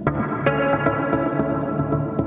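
Electric guitar chords played through a BOSS SL-2 Slicer pedal, the sustained notes chopped into a fast, even, stuttering rhythm. A chord is struck at the start and again about half a second in.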